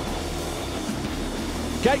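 Many motocross bikes on the start line, their engines held revving together in one steady drone while waiting for the gate to drop.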